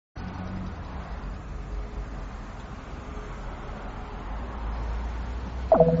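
Steady low rumble with hiss, like outdoor background noise, rising slightly toward the end; just before the end, music with bright plucked or mallet-like notes starts abruptly.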